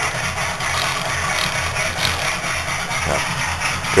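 A steady low machine hum with a faint pulsing, over an even background hiss.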